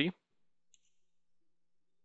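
The end of a spoken word, then near silence: quiet room tone.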